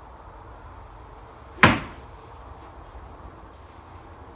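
A single sharp strike of a Tour Striker training wedge hitting a golf ball off a hitting mat, about one and a half seconds in. It dies away almost at once over a low, steady background hum.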